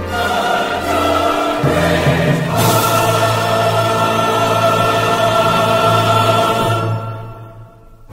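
Choir and orchestra holding sustained closing chords of a hymn, swelling about two and a half seconds in, then fading out about a second before the end.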